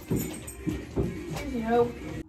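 Background music with four sharp knocks in the first second and a half, as a wooden shelf panel is fitted into a flat-pack bookshelf.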